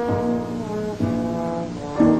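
Slide trombone playing a line of held notes, with a new note starting about a second in.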